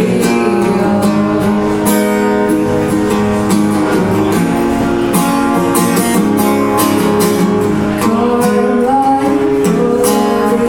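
Acoustic guitar strummed steadily as accompaniment, with a woman singing live into a microphone.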